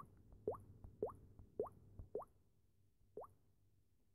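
A phone app's short, faint 'plop' sound effect, each one rising quickly in pitch. It plays six times, about every half second, with a longer pause before the last one, about three seconds in.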